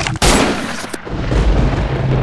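A single pistol shot about a quarter second in, sudden and loud, with a ringing tail that fades over most of a second.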